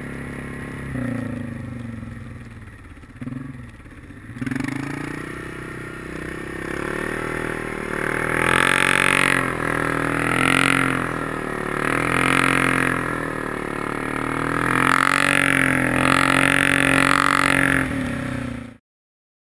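ATV engine running in the snow: quieter for the first few seconds, then revving up about five seconds in and held at high revs, surging up and down about once a second as the quad spins circles.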